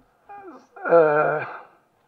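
A man's voice over a microphone: a short syllable, then a drawn-out word from about a second in whose pitch falls as it ends.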